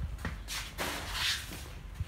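Soft shuffling footsteps and rustling of handling as a person walks through a doorway, with a couple of brief swishes in the middle and a steady low hum underneath.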